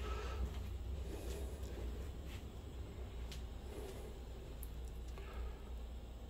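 Faint footsteps and handheld camera handling noise while walking, with a few light clicks about a second apart over a steady low hum.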